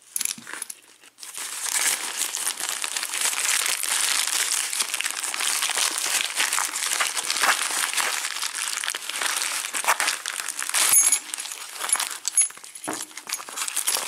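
Plastic bubble-wrap packaging crinkling and rustling as hands dig through it and unwrap a lock cylinder, with a short metallic clink near the end.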